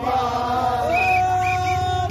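Crowd of protesters chanting together in unison, with one long note held steady through the second half.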